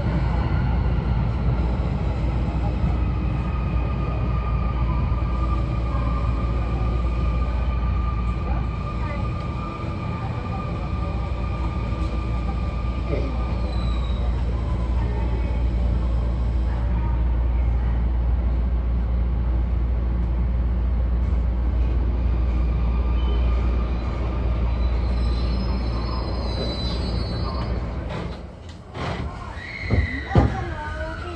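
Sotetsu 20000 series electric commuter train heard from inside the driver's cab underground: a steady low rumble, with thin whining tones that drift slowly in pitch. Near the end the rumble dips and a few sharp clicks follow.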